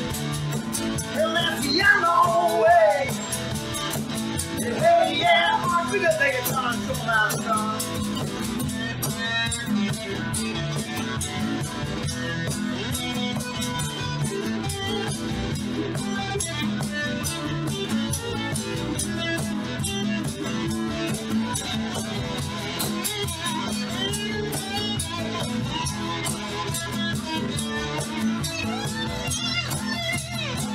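Live band music: two acoustic guitars strumming and picking over an electric bass guitar, in an instrumental passage of a rock song.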